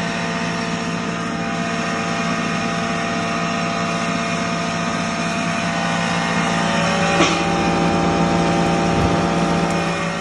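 A 5 HP stoneless flour mill (atta chakki) runs steadily, a motor hum with several steady tones, as it grinds wheat fed from its hopper. There is a short sharp click about seven seconds in, and the sound is a little louder from then on.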